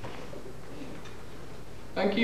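Quiet room tone of a hall under the steady hiss of a home video recording, with only a faint, brief low sound about a second in.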